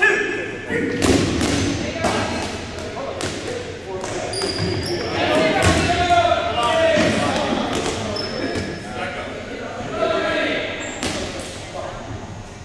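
Dodgeballs thudding and bouncing on a hardwood gym floor, many sharp impacts across the stretch, echoing in a large gym, with players' voices calling out throughout.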